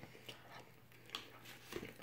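Faint eating sounds: a person chewing a mouthful of chicken pot pie, with a couple of soft short clicks, one about a second in and one near the end.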